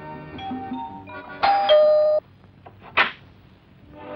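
Soft background film music, then about a second and a half in an electric doorbell chimes a two-note ding-dong, high then low, cut off after under a second. A single sharp click follows about a second later.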